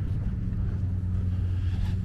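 A steady low mechanical hum, with a little wind on the microphone.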